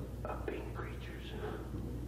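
Soft, hushed speech close to a whisper, over a steady low hum.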